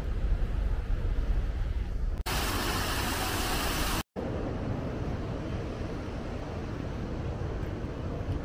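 Canal lock water gushing through a leaking wooden lock gate: a loud, even rush that starts abruptly about two seconds in and stops just short of two seconds later. Before and after it there is only a low outdoor rumble.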